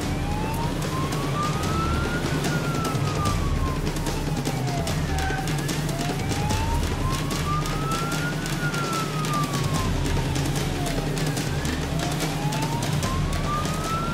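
Police car siren on a slow wail, rising and falling in pitch about once every six seconds. It is heard from inside the patrol car's cabin over a steady engine and road rumble as the car joins a pursuit.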